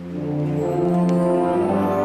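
School concert band playing held chords with brass to the fore, swelling louder about half a second in.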